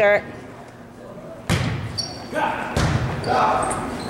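A volleyball is struck sharply about a second and a half in, the serve, and a second hit follows about a second later. Between and after the hits come short sneaker squeaks on the gym floor and shouting voices.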